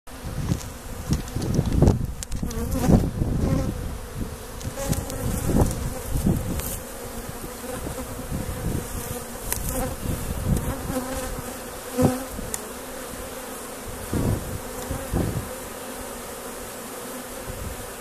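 Honeybees buzzing in numbers at a hive entrance: a steady hum, with frequent louder swells as single bees fly close past.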